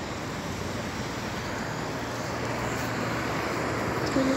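Steady road traffic noise from cars and vans driving along a street, with a low engine hum that grows a little louder in the second half.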